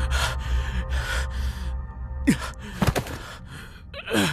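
A person's heavy, quick breaths and gasps over a low, steady music drone, with a short strained vocal sound a little past two seconds in and a sharp click near three seconds.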